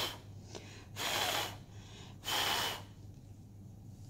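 A person blowing out three short, breathy puffs of air, a little over a second apart.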